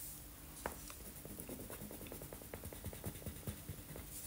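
A pink marker scratching over paper in quick back-and-forth colouring strokes, about ten a second, after a single tap of the tip on the page.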